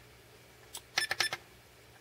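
Push buttons on a SkyRC MC3000 battery charger clicking as they are pressed to scroll through a menu: a quick cluster of four or five short clicks about a second in.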